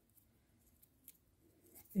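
Near silence with a few faint, short ticks in the first half: a fine steel crochet hook working thin thread. Speech starts right at the end.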